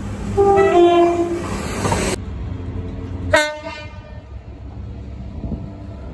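Diesel trains sounding their horns while passing: a two-note horn, high then low, about half a second in, over the building noise of the passing train, then a short single toot a little after three seconds, with a low engine rumble throughout.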